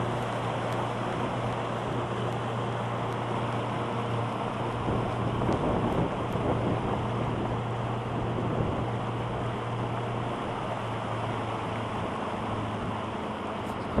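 Fishing boat's motor running at a steady speed under way, a constant low hum, with water and wind rushing past the hull.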